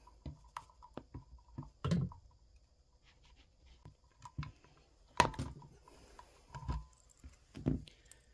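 Scattered clicks and knocks of hands handling a plastic foot pedal switch and its wires, with a sharp snip a little after five seconds in as side cutters cut through a wire lead.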